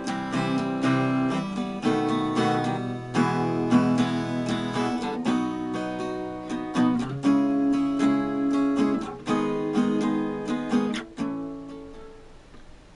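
Acoustic guitar strummed in a down, down, up, up, down, up pattern through a chord progression, with the chord changing about every two seconds. Near the end the strumming stops and the last chord dies away.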